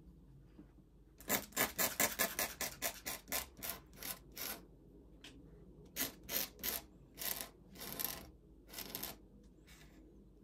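Dip pen nib scratching across paper in short ink strokes. There is a fast run of about five strokes a second starting just after a second in, then slower, separate strokes.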